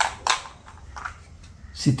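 A small plastic die rattling inside a plastic box as the box is shaken: a few sharp clicks in the first half second, then fainter ones.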